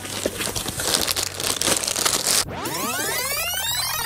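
Paper and cardboard packaging rustling and crinkling as a box is unpacked. About two and a half seconds in it gives way to a swept tone that rises and then falls.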